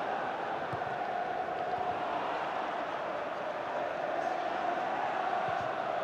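Football stadium crowd: a steady din of fans singing and chanting, with one sustained note running through it.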